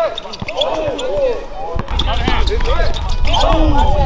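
Basketball game sounds on an outdoor court: the ball bouncing, with short squeaks of sneakers on the court surface and players' voices. A steady low rumble comes in about two seconds in.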